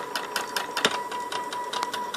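Small 200-step-per-revolution stepper motor salvaged from a printer, driven by an A4988 chopper driver, running steadily and turning a leadscrew. It makes an even, high-pitched whine with fast, regular ticking.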